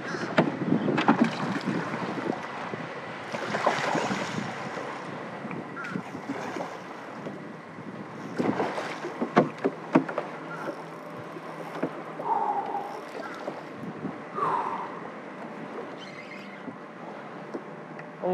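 Wind buffeting the microphone and water moving around a small open skiff, with scattered knocks and clicks and a couple of brief higher tones in the second half.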